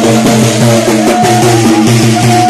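Amazigh folk music: a chorus of men singing together over bendir frame drums beaten in a steady rhythm.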